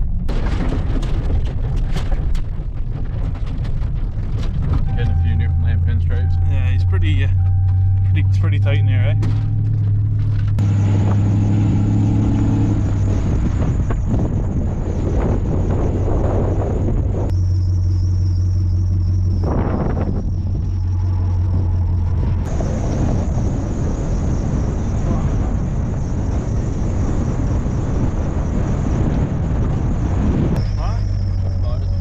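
Pickup truck driving along a gravel road, a steady low engine hum with road noise.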